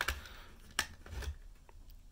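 Stiff clear plastic blister packaging around a pair of scissors crackling and clicking as it is twisted and pulled by hand in an attempt to tear it open: a sharp click at the start, another a little under a second in, and faint rubbing between. The packaging does not give way.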